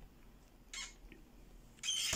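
Quiet room with two short rustles of handling, as of hands moving on the embroidery fabric and hoop: a faint one a little under a second in and a louder one near the end.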